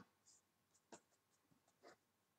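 Near silence, with a few faint, brief scratches of a paintbrush stroking acrylic paint on poster board.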